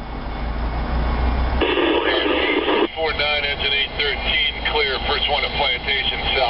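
Scanner radio on the railroad channel: a burst of squelch hiss about a second and a half in, then a voice transmission coming over the radio, over a low steady hum of traffic.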